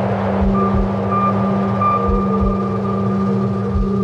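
Cinematic soundtrack drone: a steady low hum with a low double thump that repeats about every second and a half, and a held higher tone coming in about half a second in.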